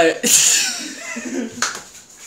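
A man's voice, first a loud breathy burst, then faint voicing, with one sharp click about one and a half seconds in.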